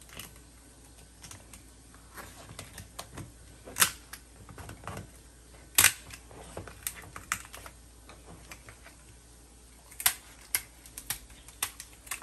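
Kitchen shears snipping and cracking through a lobster's tail shell: irregular sharp clicks and crunches, with a few louder cracks spread through.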